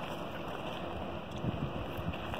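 Steady rushing outdoor noise: wind on the microphone over flowing stream water.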